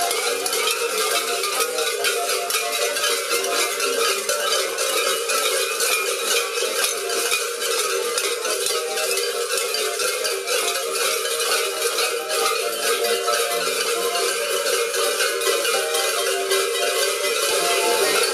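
Many large cowbells worn by carnival maskers clanging continuously and unevenly as they move, with an accordion playing a tune underneath.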